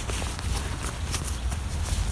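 Rustling and scraping of a bicycle handlebar mitt (pogie), its windproof shell and fleece lining handled close by, with a quick irregular string of small clicks and a low rumble underneath.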